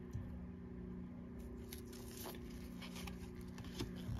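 Faint handling of glossy trading cards in nitrile-gloved hands, with a few soft ticks, over a steady low hum.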